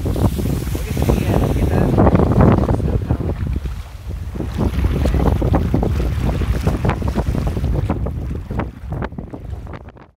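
Wind buffeting the microphone: a loud low rumble with crackle that gusts up and down, then cuts off abruptly.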